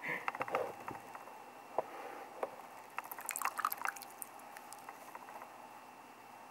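Tea bag dunked by its string in a mug of tea: faint dripping and small splashes of liquid, with scattered light ticks, most of them about three to four seconds in.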